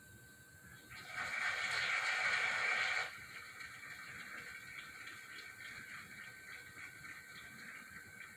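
Audience applause played back through a television's speakers: a dense burst of clapping about a second in that cuts off abruptly two seconds later, followed by scattered quieter claps.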